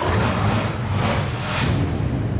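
Broadcast transition sound effect: a loud noisy whoosh over a low rumble, starting abruptly, played with an animated graphic wipe between headlines.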